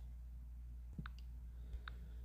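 Two faint, short clicks about a second apart over a steady low hum.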